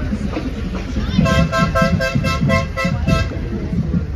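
A vehicle horn with a two-note chord, honked in a rapid string of short toots, about five a second. It starts about a second in and stops a little after three seconds, over crowd chatter.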